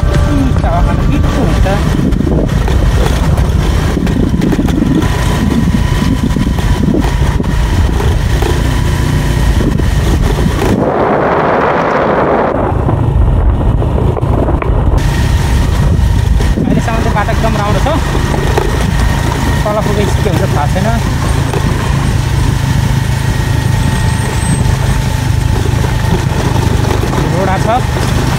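Motorcycle engine running at a steady pace while riding, under heavy wind buffeting on the microphone. About eleven seconds in, the hiss briefly drops away for a couple of seconds.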